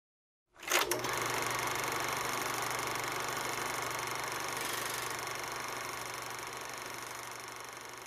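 Logo intro sound effect: a sudden hit about three-quarters of a second in, then a steady mechanical whirring rattle over a low hum that slowly fades.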